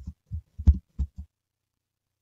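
Computer keyboard keystrokes: about six dull thumps in quick succession as a short word is typed, stopping a little over a second in.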